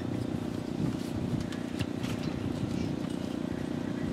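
A steady low hum with a few faint clicks.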